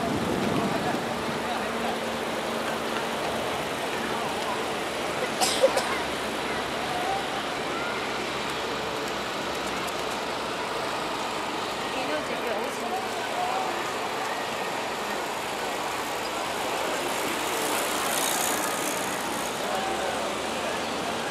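Outdoor crowd ambience: faint, indistinct voices over a steady wash of background noise, with one sharp knock about five and a half seconds in.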